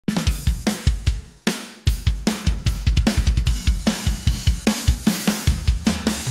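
Rock drum kit playing a song's intro: a steady beat of bass drum, snare, hi-hat and cymbals, with a brief break about a second and a half in.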